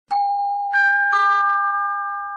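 Three-note broadcast ident chime. A low note sounds first, then a higher one, then one in between, and all three ring on together.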